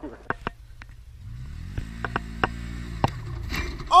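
Engine of a small off-road vehicle running under throttle, with scattered sharp knocks and clatters as it bounces over rough ground. Near the end a rush of noise rises as the vehicle starts to roll over.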